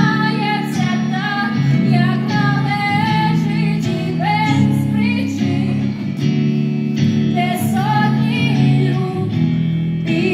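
A woman singing a song in Ukrainian live into a microphone, with a wavering melodic line over steady held guitar chords, in a stripped-down acoustic arrangement.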